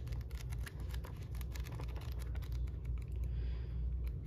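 Pages of a paperback book being flipped through by hand: a rapid, uneven run of light page flicks over a low steady hum.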